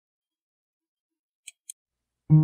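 Near silence, broken by two quick faint clicks about a second and a half in.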